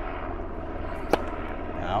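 A tennis racket strikes a served ball once, a sharp pop about a second in, over the steady drone of a helicopter overhead.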